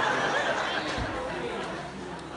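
Indistinct voices: people talking and murmuring together in a room, with a brief low thump about halfway through.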